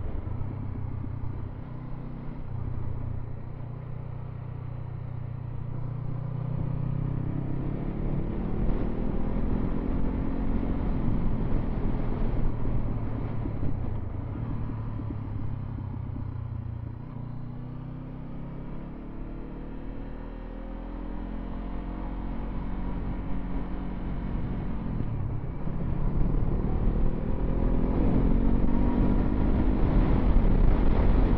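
Motorcycle engine under way, heard from the bike with wind on the microphone. Its note falls and rises several times as the bike slows and accelerates, and it climbs again near the end, where it is loudest.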